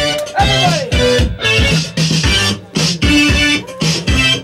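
A band playing loud, choppy rock music with electric guitar and bass. It comes in stop-start stabs with short drops between them, and a falling pitch slide comes just after the start.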